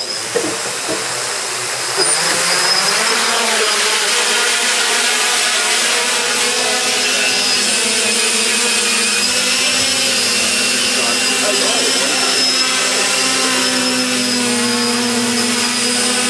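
Quadcopter drone's four electric motors and propellers spinning up, their pitch rising over the first two seconds, then holding a loud steady buzzing whine of several tones as it hovers.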